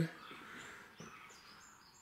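Faint high chirps of small birds: a few short calls in the second half, over quiet background noise.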